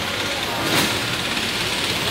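Street traffic: vehicle engines running in a steady rumble, with a short burst of noise a little under a second in.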